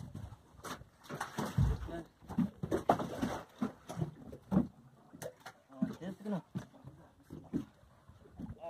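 Men's voices in short, low calls and vocal sounds, with scattered knocks and one dull thump about a second and a half in, as fishermen work at the side of a boat.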